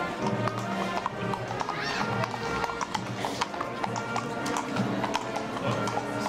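Horses' hooves clip-clopping at a walk, several uneven knocks a second, as mounted riders pass, with music playing throughout.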